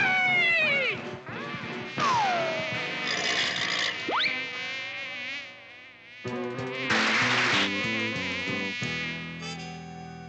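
Cartoon housefly buzzing sound effect, its pitch swooping down and wavering as the fly zips about. A quick rising whistle comes about four seconds in, and a louder buzz comes about seven seconds in.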